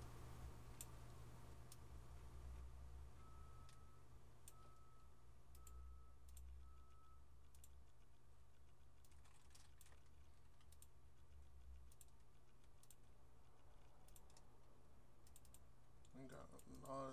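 Near silence with a low hum, broken by scattered, irregular computer mouse clicks. A few seconds in come four short, faint, evenly spaced beeps.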